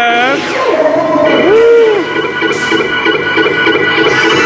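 Dark ride's ghost-themed soundtrack music with steady held tones, a wavering, gliding voice-like wail at the very start and a short rising-then-falling call about a second and a half in.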